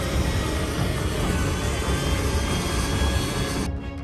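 Steady jet noise from the Kizilelma unmanned fighter's Ukrainian-designed Ivchenko-Progress turbofan on the runway, mixed with background music. The noise cuts off abruptly near the end.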